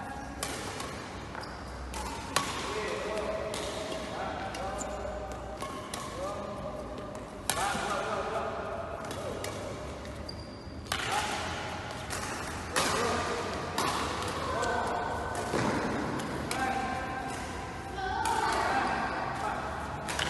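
Badminton rackets striking shuttlecocks in sharp, irregular smacks a few seconds apart, over a constant background of voices echoing in a large sports hall.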